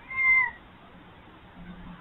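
Red fox giving a single short, high whining call, about half a second long, that dips slightly in pitch at the end.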